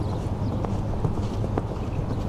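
Show-jumping horse cantering on a sand arena, its hoofbeats heard over a steady low hum.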